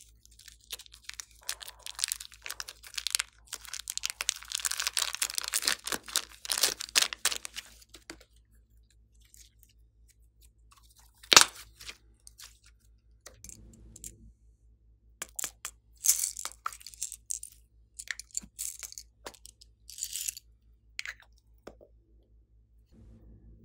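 Crackling and tearing as a thin skin is peeled off a red ball of slime, running for several seconds, then one sharp loud click and scattered smaller clicks and squelches as the slime is squeezed and handled.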